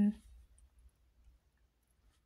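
A woman's last spoken word trails off in the first moment, then near silence: room tone with a few faint ticks.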